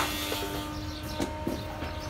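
Woodworking-shop background: a steady machine hum and low rumble, with a few light knocks about a third of a second, a second and a quarter, and a second and a half in.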